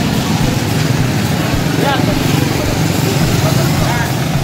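Street traffic: motorbikes and cars running by, with a steady low engine rumble throughout.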